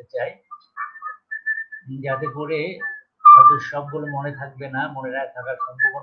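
A man's voice over a live-stream audio link, broken up and mixed with thin whistle-like tones, the clearest a short steady whistle about a second in. This is the kind of weird noise viewers report on the stream.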